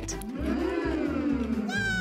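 A child's long, drawn-out "mmm" of enjoyment while eating a candy, its pitch rising and then sliding slowly down, over background music with a steady beat. A short rising whistle-like sound comes in near the end.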